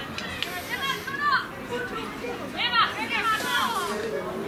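Young girls' high-pitched voices calling and shouting, several at once, loudest about a second in and again near three seconds.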